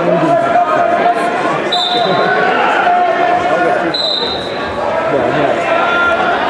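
Chatter of many voices in a large gymnasium, with two short high-pitched tones about two seconds apart.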